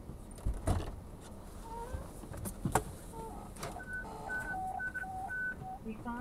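A few sharp clicks and knocks, then from about four seconds in a string of short electronic beeps at two pitches, like keypad dialing tones.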